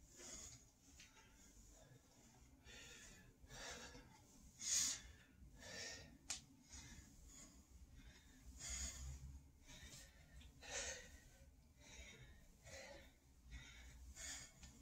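A man breathing hard from exertion during a set of bodyweight squats, faint, with short forceful exhales every second or two.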